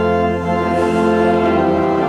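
Organ playing sustained chords, changing to a new chord about half a second in.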